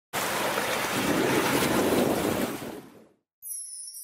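Loud steady rushing noise of a rainstorm, fading out about three seconds in. After a brief silence, high shimmering tones of a song's intro begin.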